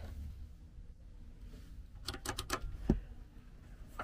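New seat belt hardware being handled: a quick run of four or five sharp clicks about two seconds in, then a single duller knock.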